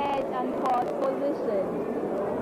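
A woman speaking, continuous talk with no other distinct sound.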